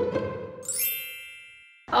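Intro sting for a title card: a bright, high chime that rings out about half a second in and fades away steadily.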